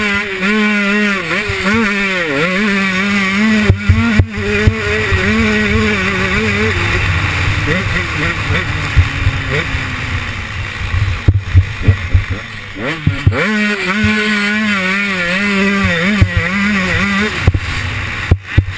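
KTM 125 two-stroke motocross engine revving hard, its pitch rising and falling as the throttle is worked through the gears. About seven seconds in the throttle closes and the engine note drops away for several seconds, with knocks from the bike over the track, then it comes back on the throttle.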